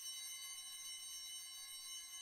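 Altar bell rung at the elevation of the consecrated host: a bright bell strikes at the start and rings on with many high overtones, beginning to fade slowly near the end.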